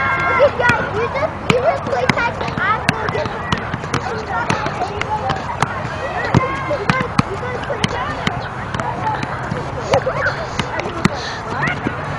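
A soccer ball being juggled, kept up with repeated light taps that come irregularly, about one or two a second.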